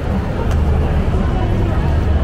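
A car driving past close by, its engine and tyres under the steady chatter of a crowd at outdoor bar tables.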